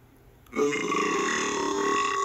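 A long burp, steady in pitch, starting about half a second in, played back from a video on a computer screen.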